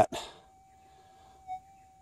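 Minelab GPZ 7000 metal detector's faint, steady threshold tone, a single thin note, briefly swelling about one and a half seconds in.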